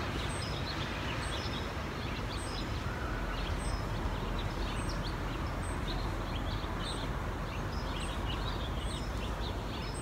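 Steady outdoor background noise with a low rumble, and small birds chirping here and there throughout, including a thin high chirp repeating about once a second.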